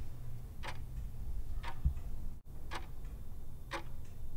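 Clock-tick sound of a countdown timer ticking off the seconds, one tick a second, four ticks, over a faint low hum.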